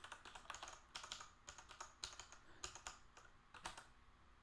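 Faint typing on a computer keyboard: irregular runs of quick keystrokes as code is edited.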